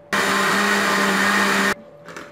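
Countertop electric blender motor running for one short spin of about a second and a half, blending watermelon juice in a plastic jug. It starts and cuts off sharply, holding a steady pitch throughout.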